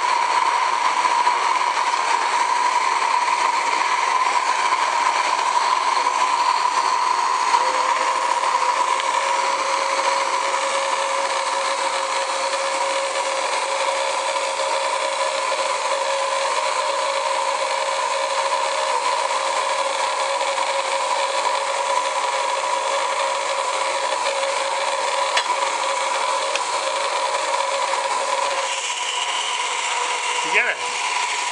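Gas-fired live-steam model locomotive under steam on a stand: a steady rushing hiss with a steady whistling tone, joined by a second, lower tone about eight seconds in that drops out just before the end.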